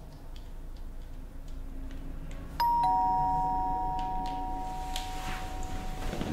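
A two-note ding-dong doorbell chime about two and a half seconds in, a higher note then a lower one, ringing on and fading slowly. Faint light clicks come before it.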